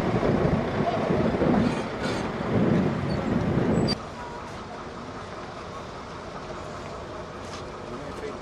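Outdoor street ambience with wind buffeting the microphone and indistinct voices in the background. About four seconds in the level drops suddenly, leaving a quieter background with a faint steady low hum.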